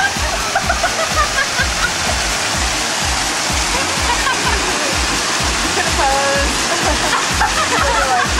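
Background dance music with a steady beat, over the rushing water of a small waterfall. Young women laugh and talk.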